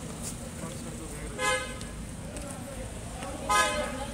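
Car horn honking twice: a short toot about a second and a half in, then a slightly longer one near the end, over background crowd chatter.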